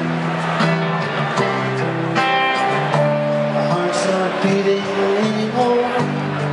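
Rock band playing live in an arena, an instrumental passage between vocal lines with sustained bass notes, melodic keyboard and guitar lines and steady cymbal hits, heard from far back in the audience.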